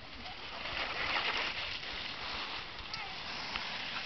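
Cross-country skis sliding over packed snow: a soft hissing swish that swells about a second in and then eases off.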